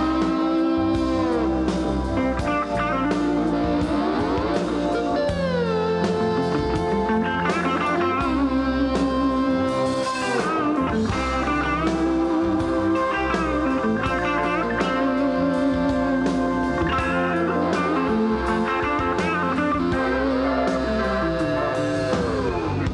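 A live Southern rock band playing an instrumental passage, led by a hollow-body electric guitar, with notes that slide down in pitch several times over bass and drums.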